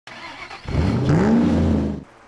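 A car engine revving: its pitch climbs for about half a second, then holds at a steady high rev and cuts off suddenly.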